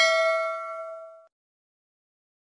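A bell chime sound effect ringing on after being struck and dying away, gone a little over a second in. It is set off by the click on the notification bell icon.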